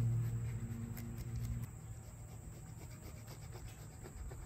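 Fresh Parmesan cheese being grated on a microplane rasp grater over a pizza: soft, repeated rasping strokes. A low steady hum stops about one and a half seconds in.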